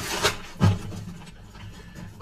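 Tarot cards being handled: a short paper rustle right at the start, then a soft thump about half a second later, with faint rustling after.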